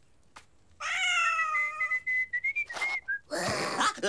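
Cartoon cat character's voice: a short pitched vocal sound that slides into a thin, wavering whistle, followed by a loud breathy burst near the end.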